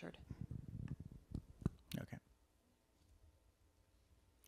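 Microphone handling noise: low rumbling knocks and a few sharp clicks for about two seconds as a handheld microphone is handled, followed by faint room tone.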